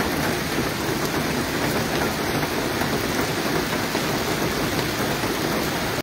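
Heavy rain falling steadily, an even, unbroken hiss.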